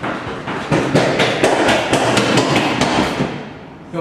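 Running footsteps on a hard hallway floor: quick, even steps, about four or five a second, that grow louder as the runner comes closer and stop a little after three seconds in.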